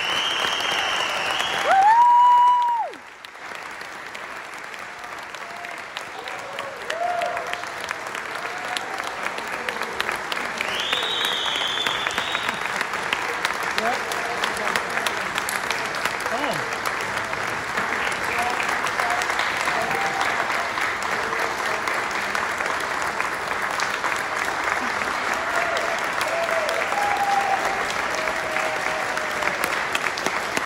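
Audience applauding steadily, with scattered cheers from the crowd and one loud high whoop close by about two seconds in.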